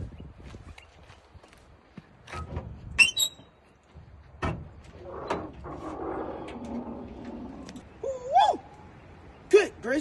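Metal clunks and a drawn-out rustling scrape as a car's hood is released and lifted open, with two short sharp knocks before it. Brief vocal exclamations come near the end.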